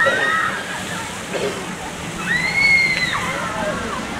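Voices in the background, including a high drawn-out shout or squeal about two seconds in, over a steady rushing noise.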